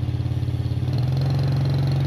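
Honda Supra Fit single-cylinder four-stroke motorcycle engine running with a steady beat; about a second in the revs rise slightly and hold.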